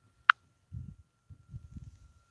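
A single sharp click about a third of a second in, then a few soft, low, muffled bumps of handling noise as a hand moves near the phone. A faint steady high whine runs underneath.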